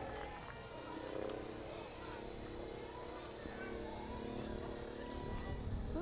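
A passing motor vehicle's engine hums steadily for several seconds, then fades, under faint scattered voices. A low rumble rises near the end.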